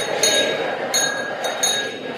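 Small jingling bells of the chant's musical backing, struck a few times a second, over a steady high drone in the pause between sung lines.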